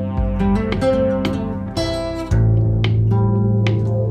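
Background music: acoustic guitar picking and strumming over a steady bass line.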